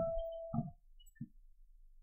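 A piano note played softly, ringing for under a second, with dull knocks of the keys going down; one more soft key knock a little over a second in, then quiet.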